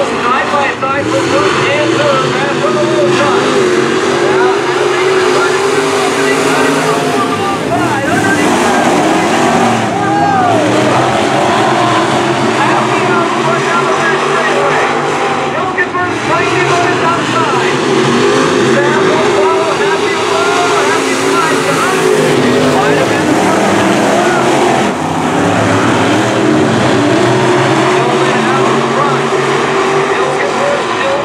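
Several dirt-track Modified race cars running laps together. Their engines are loud and continuous, the pitch rising and falling as they accelerate and lift.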